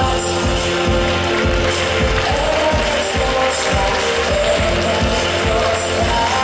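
Dance music with a steady beat and a held melody line, played for a stage dance.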